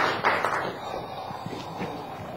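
Audience applause dying away within about the first second, leaving a few scattered claps and faint room noise.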